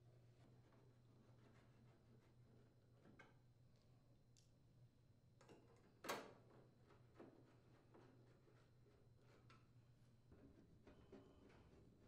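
Near silence: faint clicks and taps of a Phillips screwdriver driving screws into a range's sheet-metal rear access panel, with one sharper click about halfway through, over a low steady hum.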